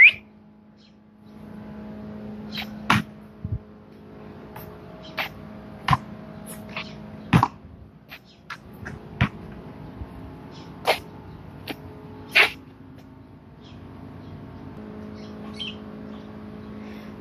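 Horse hooves knocking on a concrete floor: about a dozen sharp, irregular clops as a horse shifts and is moved about, over a steady low hum.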